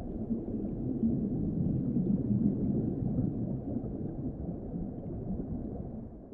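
Underwater ambience: a low, muffled rumbling wash with nothing in the higher range, building over the first second and easing slightly near the end.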